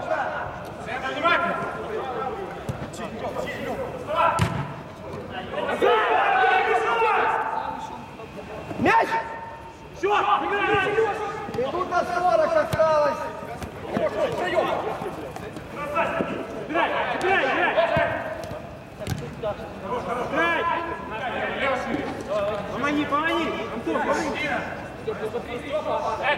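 Men's voices calling out during a small-sided football game, with three sharp thuds of the ball being kicked, about four, nine and nineteen seconds in.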